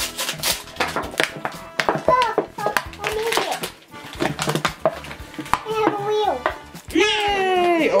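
Crinkling and crackling of a small packaging bag being opened by hand, in many quick sharp rustles, with a child's voice and background music over it.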